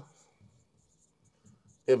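Pen writing by hand on an interactive touchscreen display: faint, short scratching strokes.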